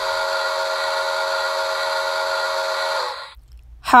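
Steam whistle from a model Polar Express No. 1225 steam locomotive's sound system: one long, steady chord of several notes that cuts off sharply about three seconds in.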